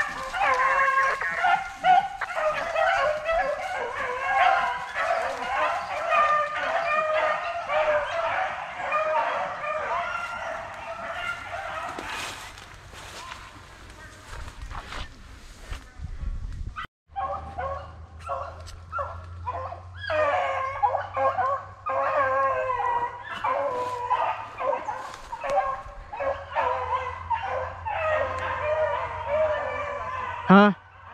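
A pack of beagles baying together, many overlapping drawn-out and choppy calls: hounds giving voice on a rabbit's scent track. The baying breaks off for a moment about halfway through, then carries on.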